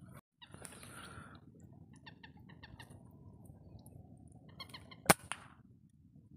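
Short bird calls in a marsh, then about five seconds in a single sharp shot from a scoped rifle, the loudest sound, followed quickly by a smaller crack.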